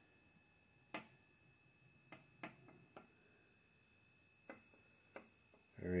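A few faint, sharp clicks at irregular intervals, about six in all, over a faint steady high-pitched background tone.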